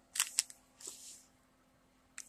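Plastic snack wrapper handled on a tabletop: two quiet clicks, then a short rustle about a second in.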